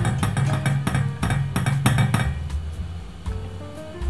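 Background music, over light clicks and clinks of a spatula stirring melting butter in a stainless steel saucepan, busiest in the first half.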